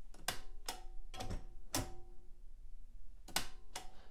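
Remington desktop manual typewriter clacking: about six sharp mechanical strikes, four spread over the first two seconds and two close together near the end, some followed by a brief metallic ring.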